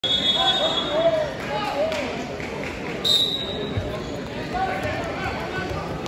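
Voices of spectators calling and chattering in a gym during a wrestling bout. A high steady whistle tone sounds at the start, and a short, sharper whistle blast comes about three seconds in, typical of a referee's whistle.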